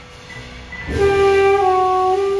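Live small-band jazz: soft piano and double bass, then about a second in a soprano saxophone comes in on a long, loud held note.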